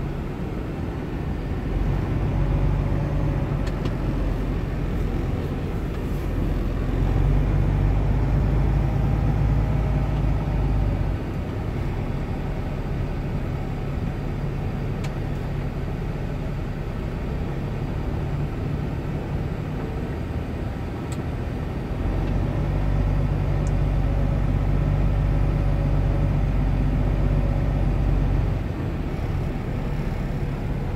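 Semi-truck tractor's diesel engine heard from inside the cab as the truck rolls slowly across a yard. It drones steadily, swelling louder for a few seconds at a time, most of all about seven and again about twenty-two seconds in, before dropping back.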